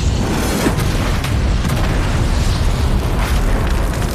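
Cinematic explosion sound effects for fiery energy blasts: continuous low booming with several sharp cracks of impact.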